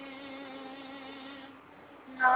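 A boy's voice holding the last sung note of a phrase, fading away and ending about one and a half seconds in.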